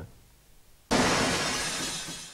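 A glass bottle smashing on pavement about a second in: a sudden crash of breaking glass whose shards ring and scatter, fading over the next second.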